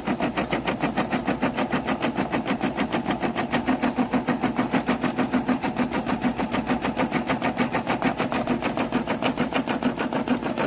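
Brother SE600 embroidery machine stitching a design through vinyl: a rapid, even rhythm of needle strokes that keeps a steady pace.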